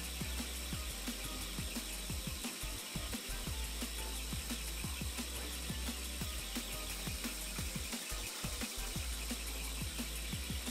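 Vertical milling machine running, its end mill cutting the edge of a metal block held in a vise: a steady high whine over a low hum, with many small irregular ticks from the cut.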